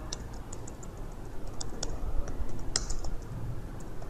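Typing on a computer keyboard: an irregular scatter of key clicks, some louder than others, over a low background rumble.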